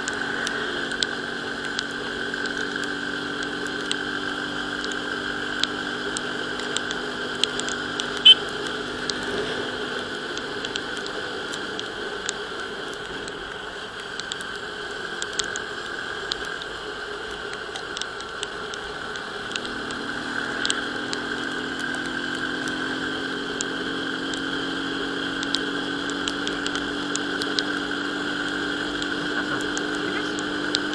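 Euro Rapido 110 motorcycle's small single-cylinder engine running at road speed under a steady rush of wind and tyre noise. The engine note drops back for several seconds in the middle, then picks up again and slowly climbs in pitch. Scattered sharp ticks sound throughout, one louder click about eight seconds in.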